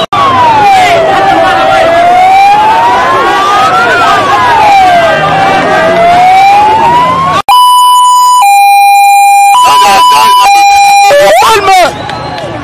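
Electronic siren wailing, rising and falling slowly about every four seconds over crowd noise. After a sudden break about seven seconds in, it switches to a clean two-tone hi-lo pattern, roughly a second per tone, and ends with a short rising sweep.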